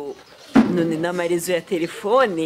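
A woman's voice speaking with long, drawn-out vowels, starting after a short pause about half a second in.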